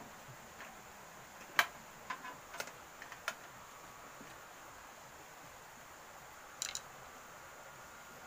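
Faint, scattered clicks and taps of hands handling electrical fittings on a metal panel box: one sharper click about one and a half seconds in, a few lighter ones over the next two seconds, and a short cluster near the end.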